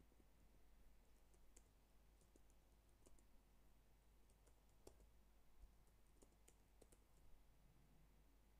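Faint computer keyboard keystrokes: irregular light clicks of typing over near-silent room tone.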